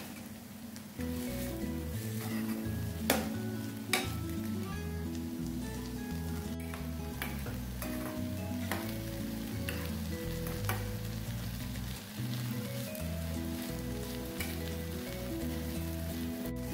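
Chopped tomatoes, onions and dal sizzling in oil in a steel pan while a metal spoon stirs them, with a sharp click now and then as the spoon knocks the pan. Soft background music runs underneath.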